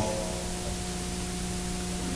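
A steady hum made of a few held tones, over an even hiss.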